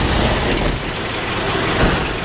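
A loud, steady rumble of noise, heaviest in the low end, with a brief brighter swell near the end.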